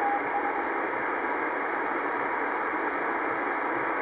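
Icom IC-R8500 communications receiver in CW mode on 28.200 MHz, its speaker giving a steady band hiss of static. A faint Morse code tone keys a couple of dashes in the first half-second.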